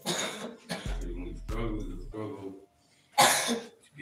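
Speech over a hall's sound system with soft music underneath, broken by coughs close to the microphone, the loudest a sharp one about three seconds in.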